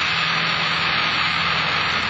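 Loud, steady rushing noise like static or a roar, with a low steady hum beneath it.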